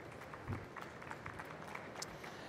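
Faint, scattered hand-clapping from a small audience: a few irregular claps after a soft knock about half a second in.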